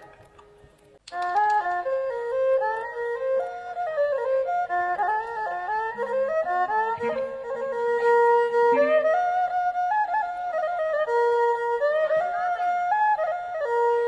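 Khmer traditional (pleng boran) wedding ensemble playing an instrumental piece, a single ornamented melody line over the band with some long held notes. The music starts about a second in, after a brief near-quiet pause.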